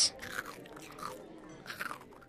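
Quiet eating sound effect: irregular chewing and crunching noises.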